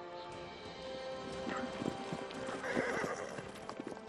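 Film soundtrack horse effects: hooves galloping and a horse whinnying about three seconds in, over music with long held notes.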